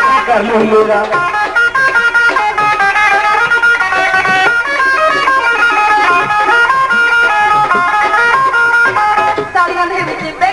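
Live Punjabi folk stage music: an instrumental passage with a plucked-string instrument playing a lead melody of short held notes.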